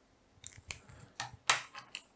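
Felt-tip pen on paper: a handful of short scratches and taps as strokes are written, the strongest about a second and a half in.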